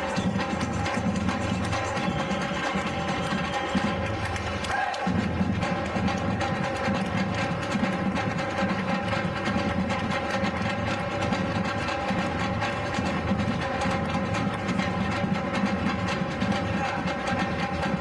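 Batucada drum ensemble playing a continuous samba rhythm: deep surdo bass drums under rattling snare and repinique drums played with sticks. The bass drums drop out for a moment about five seconds in, then come back.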